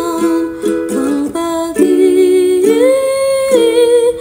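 Ukulele strummed in chords under a woman's singing voice, which rises and holds one long note near the end.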